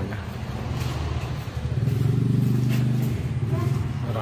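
Car engine running at a steady idle, its hum growing louder for about a second near the middle.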